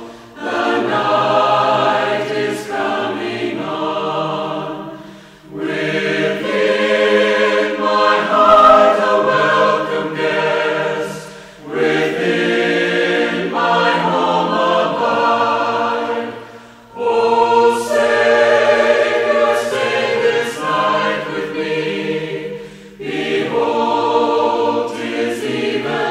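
Choir singing a slow hymn in long held phrases of about five to six seconds each, with short breaks between phrases.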